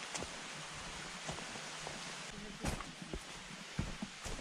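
Footsteps on a dry-leaf-covered dirt forest trail: a handful of irregular steps, the sharpest a little before three seconds in and near the end, over a steady background hiss.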